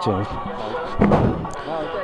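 People's voices talking close by, with one sudden slam about a second in.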